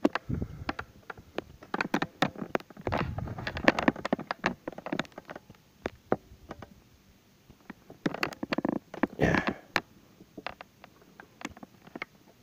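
Handling noise from a hand-held camera being carried and moved: rubbing, low thuds and many small clicks and knocks, with a heavier rumble near the start and again about three seconds in.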